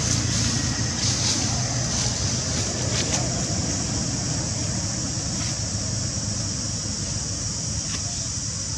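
Steady outdoor background noise: a low rumble under a steady high hiss, with a few faint clicks about one, three and five seconds in.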